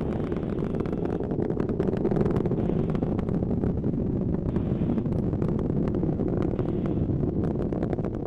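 Atlas V rocket's RD-180 first-stage engine heard during ascent: a steady low rumble with a dense crackle running through it.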